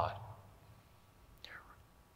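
A man's speaking voice trailing off at the very start, then near silence, broken about one and a half seconds in by a faint, brief intake of breath at the microphone.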